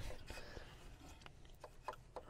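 Faint handling noise: a few small clicks and rustles as rubber vacuum hoses are fitted by hand onto the ports of a turbo wastegate actuator solenoid.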